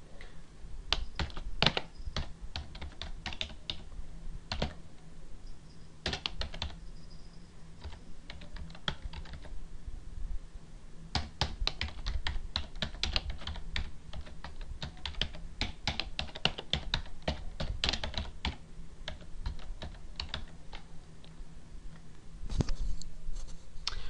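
Typing on a computer keyboard: irregular keystrokes come in quick bursts with short pauses between them as words are entered.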